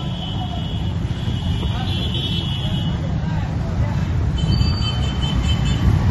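Busy street noise: motorcycle and traffic engines under a heavy low rumble, with voices in the crowd. A high steady horn-like tone sounds for about the first half and again near the end.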